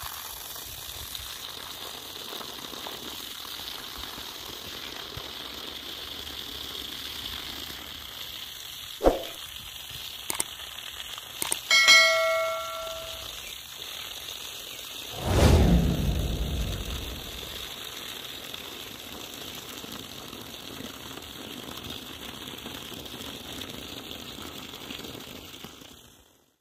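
Steady stream of water from a 24 V DC solar pump pouring out of a pipe onto grass. A short pitched sound comes about midway, followed by a louder low sound that falls in pitch, and the flow cuts off at the very end.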